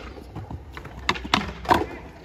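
Skateboard wheels rolling on concrete, with three sharp clacks of the board in the second half.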